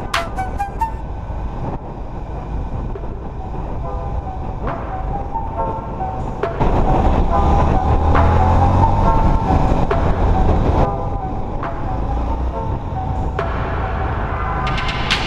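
Indian FTR motorcycle riding at road speed, its engine and wind rumble heard from a handlebar camera, getting louder in the middle as speed rises, then easing off. Background music plays over it.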